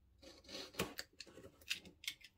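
Hand rubbing and shifting a cardboard box: a rustling scrape that swells and peaks just under a second in, then a couple of short, sharp scrapes.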